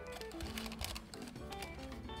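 Soft background music, with faint light ticks and rustles from hands pressing a crumble crust into a parchment-lined pan.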